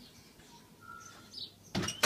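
Faint, short bird chirps, then two sharp knocks close together near the end.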